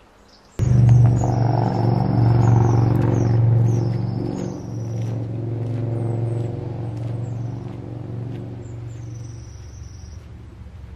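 A loud low rumble that cuts in suddenly about half a second in and slowly fades, with short, repeated high chirps above it.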